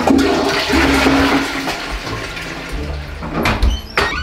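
A toilet flushing: a loud rush of water that dies away about three and a half seconds in.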